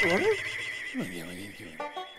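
Cartoon animal character vocalizing without words: a short wavering call at the start, then a lower, falling call about a second in.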